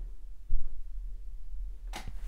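Oil paintbrush working on a stretched canvas: low dull knocks over a steady rumble, with one thump about half a second in and a sharp click near the end.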